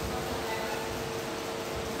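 Room tone: a steady hum and hiss with a faint steady pitched tone.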